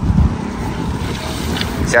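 A vehicle engine running with a steady low drone.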